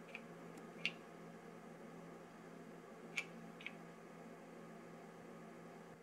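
Keys on a grandMA2 lighting console pressed by hand: a few faint clicks in two pairs, one pair near the start and another a little after three seconds, over a low steady hum.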